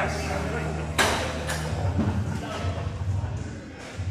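A sharp thud about a second in, followed by a couple of lighter knocks: the plates of a cable row machine's weight stack coming down as the set ends, over gym background music and voices.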